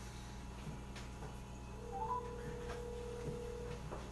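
Telephone ringback tone over a phone's speaker: one steady ring of about two seconds starting near the halfway point, just after a brief rising chirp. The called phone is ringing and has not yet been answered.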